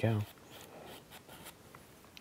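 Bristle brush working oil paint on canvas: faint, scratchy rubbing strokes.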